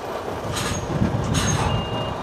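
Articulated lorry's diesel engine running as it manoeuvres at low speed, with two short hissing bursts and a reversing beep sounding near the end.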